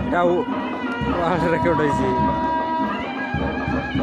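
Western Odisha Ghumar dance music: drums beating a steady rhythm under a high, wavering melodic line, with one long held note in the middle.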